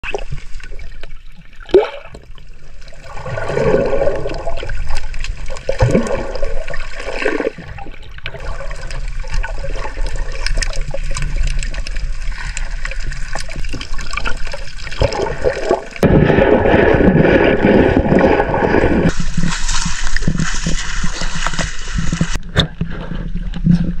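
Underwater recording: water rushing and gurgling around the submerged camera as a diver swims, with bubbles, louder from about two-thirds of the way through.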